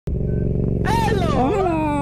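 Motorcycle engine running steadily while riding. From about a second in, a person's high voice exclaims in one long, gliding, falling tone.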